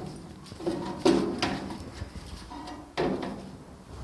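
Handling clatter: a few short knocks and rattles, the loudest about a second in and near three seconds in. The drill is not yet running.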